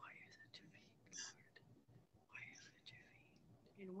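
Faint whispering voice: a few short whispered phrases without voiced tone.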